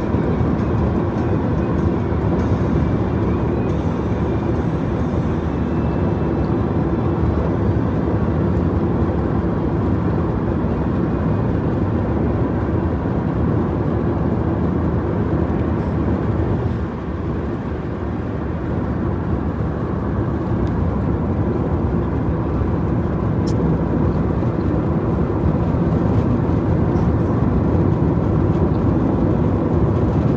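Steady road and engine noise of a car driving at speed, heard from inside the cabin, easing off briefly a little over halfway through.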